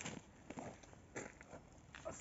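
Faint crackles and a few light knocks of a large dry tree root being gripped and shifted on dry, stony ground, with the clearest knock about a second in.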